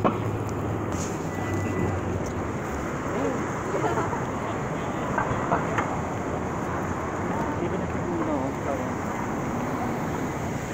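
Busy city street traffic at a crosswalk: a steady wash of car noise with vehicles moving close by, and passers-by talking in the background.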